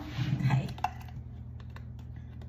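Metal teaspoon clicking and scraping against the inside of a glass jar of minced garlic: a scattered run of small, light clicks.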